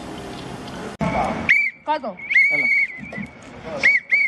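Sneakers squeaking in short, repeated chirps during a basketball game, starting about a second and a half in.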